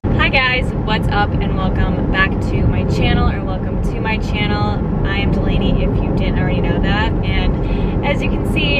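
Steady road and engine noise inside a moving car's cabin, a loud low rumble, with a woman talking over it.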